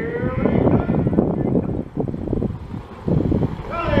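Mobile starting-gate truck accelerating away, its engine rising in pitch and fading out about half a second in, under steady wind noise on the microphone.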